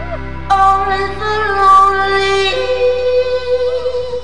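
Live rock concert: a female lead singer holds a long sustained note over a quietened band, then moves up to a second, higher held note about two and a half seconds in.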